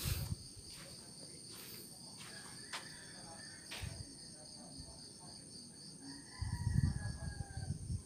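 Steady high-pitched chorus of night insects, crickets. Now and then it is broken by single sharp ticks of falling drops of ash-laden rain. Near the end comes a low rustling rumble.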